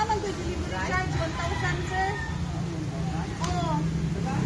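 People talking, with a steady low rumble underneath.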